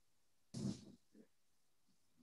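A brief, faint vocal sound from a person on the video call, a short grunt-like syllable about half a second in, with a few faint blips after it.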